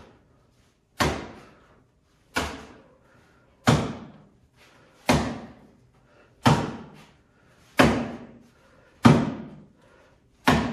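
Boxing-gloved punches landing on a partner's raised guard, seven hits at an even pace of about one every 1.3 seconds, each with a short echo in the room.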